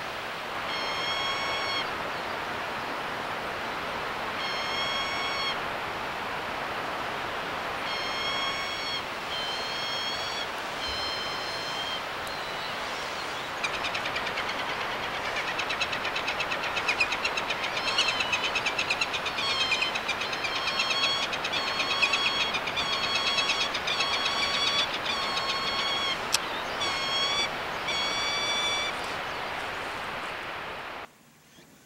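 Peregrine falcon calling: short, clear, whining calls, a few seconds apart at first. From about halfway a fast rattling chatter joins in and the calls come about once a second as the pair mate, all over a steady background hiss.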